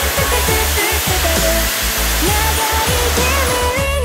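A rocket's engine roaring as it lifts off, a loud, even rushing noise that thins out near the end, over an upbeat pop song.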